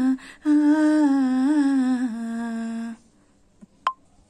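A film song's wordless humming vocal, held notes on a slowly stepping melody, playing from a TV in a small room; it stops about three seconds in. A sharp click follows near the end.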